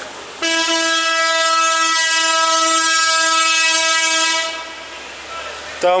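A vehicle horn sounding one long, steady, single-note blast of about four seconds, starting about half a second in and cutting off.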